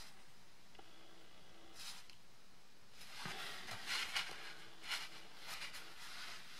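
Faint scratchy rustles of a pen tip dabbing dots on a kraft-paper card, along with the card being handled, in a few short spells.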